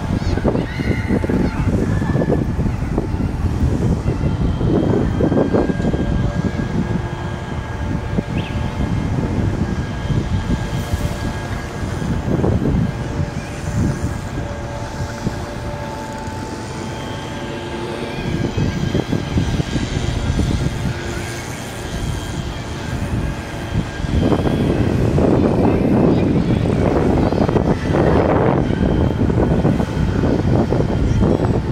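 Outdoor city street ambience: a continuous low rumble of traffic and passing vehicles, growing louder in the last few seconds.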